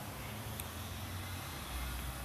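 Steady low background hum with a faint hiss, and one faint click about half a second in.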